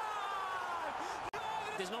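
A Spanish TV football commentator's long, drawn-out shout, one held high-pitched vowel that rises slightly and then sags, reacting to the goalkeeper saving the penalty. It breaks off abruptly about a second and a half in at an edit, and calmer commentary starts.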